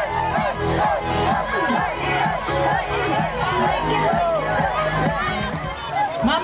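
A crowd of young people shouting and cheering, many voices at once.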